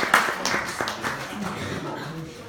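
Audience applause thinning out and dying away in the first second or so, giving way to the murmur of people talking.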